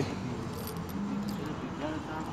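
Light metallic jingling with scattered small clicks, and a low voice murmuring briefly about halfway through and again near the end.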